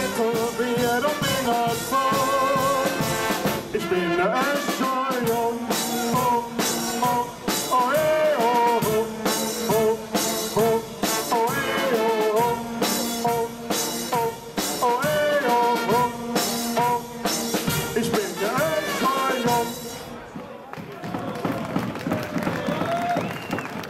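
A carnival guard's brass band of trumpets and tuba, with bass drum and snare drum keeping a steady beat, plays a lively carnival song while voices sing along. The music stops about two seconds before the end.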